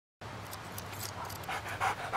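Yellow Labrador retriever panting in quick, even breaths, about five a second, starting about one and a half seconds in, over faint crackles.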